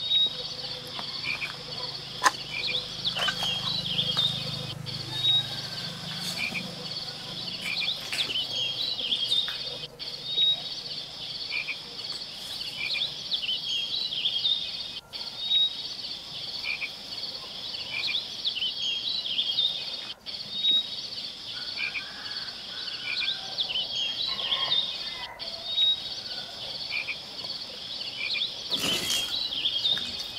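Chorus of insects and frogs: a steady high-pitched trill with short chirps repeating about every second and a half. The whole pattern breaks off and starts over every five seconds, like a looped recording.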